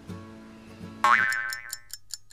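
Editing sound effects: quiet background music, then about a second in a cartoon boing whose pitch sweeps quickly upward, followed by fast, even ticking of about six ticks a second that marks time passing.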